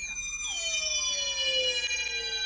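Horror-film soundtrack effect: a cluster of high electronic tones starts abruptly and slowly slides downward in pitch, while a few tones hold steady.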